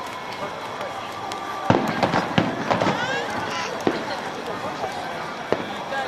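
Fireworks aerial shells bursting: a sharp bang about two seconds in, then several more in quick succession over the next two seconds, with people talking around the microphone.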